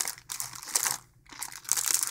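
Clear plastic wrapping on balls of crochet yarn crinkling as hands handle the packages, with a short pause about a second in.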